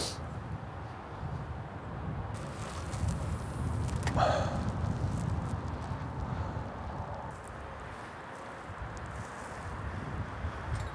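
Strong wind buffeting the microphone, a low, uneven rumble that swells and eases. A short, brighter sound cuts through about four seconds in.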